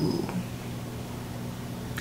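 A low steady hum in a pause between words.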